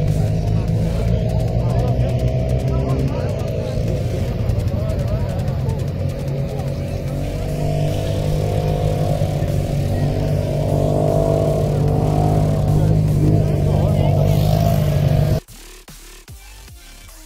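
Engines of several side-by-side dune buggies idling together, a steady low hum with a wavering pitch above it, which cuts off suddenly near the end.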